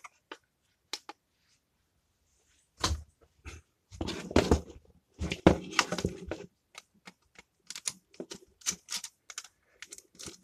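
Irregular clicks and plastic clatter from handling a transparent plastic modular RCD and a screwdriver, with the screwdriver working at the unit's wire terminal screws. The clicks come in bunches, busiest in the second half.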